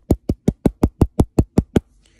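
Knuckles knocking rapidly and steadily on a hard surface, about five sharp knocks a second, stopping near the end: an imitation of someone knocking at a door.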